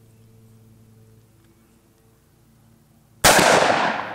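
Quiet for about three seconds, then a single 12-gauge shotgun blast from an 18.5-inch-barrel Weatherby pump shotgun, its report ringing out and fading slowly.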